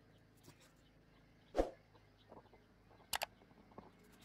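Faint, sparse handling sounds in a quiet room: a soft knock a little over a second and a half in, the loudest, then a quick double click just past three seconds, with a few tinier clicks between.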